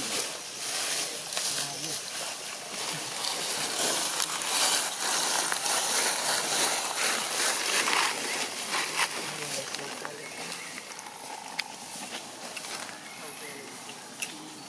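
Faint, indistinct voices of people talking in the background over a steady outdoor hiss, with scattered crackles of dry leaves and one sharp click about eleven and a half seconds in.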